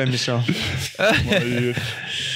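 Men laughing together, with a brief pause about a second in.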